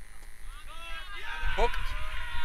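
Mostly voices: a commentator calls the shot near the end, over a steady low rumble.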